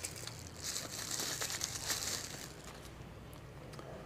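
Small clear plastic zip bag crinkling as it is handled, with a few small clicks, lasting from about half a second to two and a half seconds in.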